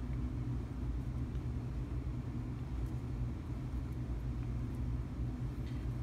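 Steady low background rumble, with no distinct knocks or clicks.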